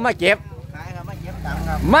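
An engine running with a low, steady hum that grows louder over the last half second.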